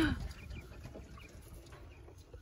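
A flock of young Coturnix quail calling faintly with short chirps in their wire cage, after a short louder sound right at the start.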